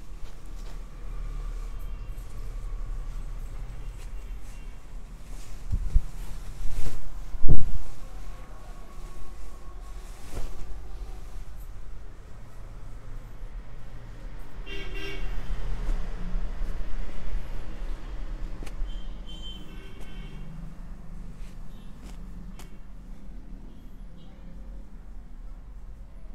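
Steady low background hum, broken by a few sharp knocks about a quarter of the way in, the last the loudest. Two short honks, like a vehicle horn, come in the second half.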